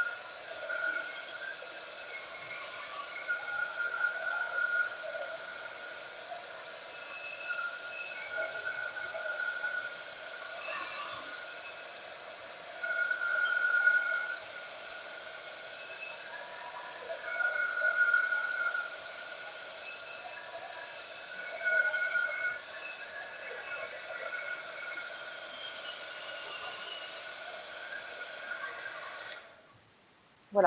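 Handheld embossing heat tool running, drying an inked card: a steady fan whir with a whine that swells and fades several times as it moves over the card. It switches off near the end.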